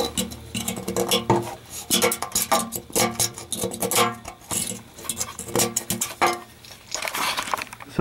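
Rust scale being picked and scraped off the pitted inside of a cast iron boiler heat exchanger section: a run of irregular clicks and scrapes as flakes break away. The flaking is from water-side oxygen corrosion.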